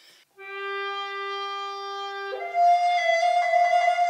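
Alto recorder playing two long held notes: a lower note from about half a second in, then a jump to a higher note a little after two seconds that is held through the end. The high note sounds without a squeak.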